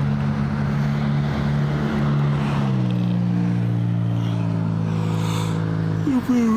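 A motor vehicle engine idling steadily with a low hum, its tone shifting slightly lower about two and a half seconds in.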